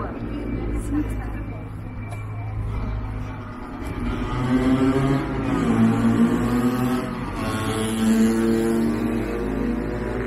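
A motorcycle and a motor scooter riding past, engines rising in pitch as they accelerate, first about halfway through and again near the end.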